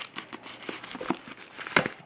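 Crinkling and crackling of a padded mailing envelope and its packaging as trading cards are taken out of it, irregular sharp crackles with the loudest ones at the start and near the end.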